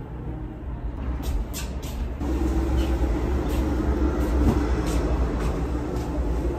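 Low rumble of a large vehicle passing outside, swelling from about two seconds in and easing near the end. A few soft rustles and thuds of pillows being set on a bed come about a second in.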